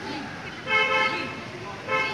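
Vehicle horn honking twice: a flat, steady toot of about half a second just under a second in, then a shorter one near the end.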